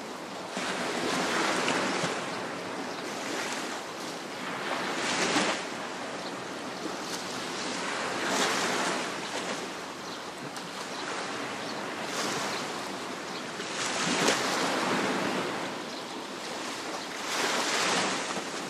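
Waves washing onto a coral reef shore: a steady hiss of surf that swells as a wave breaks every few seconds.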